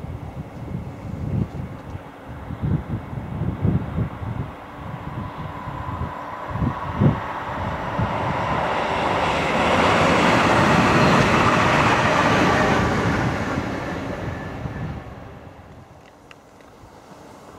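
London Midland Class 350 electric multiple unit approaching and passing below at speed: a faint rising whine, then a rush of wheels and motors that is loudest about ten to thirteen seconds in and dies away near the end. Wind buffets the microphone in the first several seconds.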